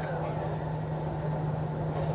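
A steady low hum over a low background rumble, with no speech.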